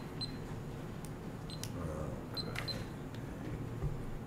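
Faint scattered clicks and light ticks over a quiet room background, with a soft low thump near the end.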